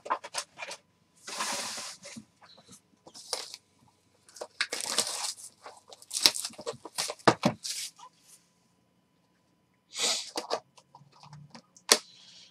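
Plastic shrink-wrap being torn and crinkled off a cardboard trading-card box, then the box lid being opened and handled. The sound comes as irregular rustling bursts and light clicks, with short pauses between.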